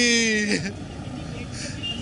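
A grieving man's voice drawn out into a long cry that falls in pitch and breaks off about half a second in. After that comes a pause with only steady low background noise.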